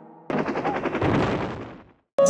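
Rapid burst of machine-gun fire used as a sound effect. It starts suddenly about a quarter second in, with fast, evenly repeated shots, and fades out near the end.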